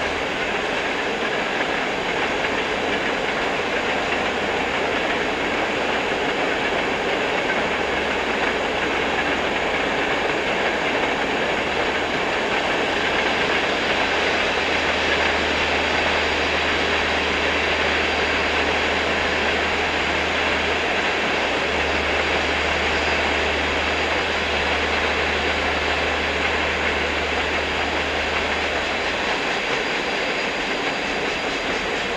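A loud, steady rushing and rumbling noise that does not change, with a low hum that drops in and out every few seconds.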